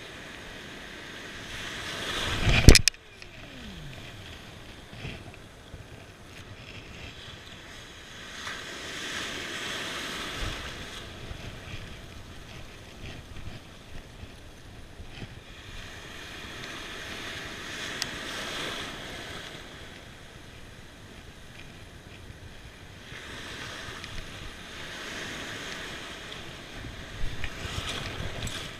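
Ocean surf washing in, swelling and fading about every seven or eight seconds. About three seconds in there is one loud, sudden thump.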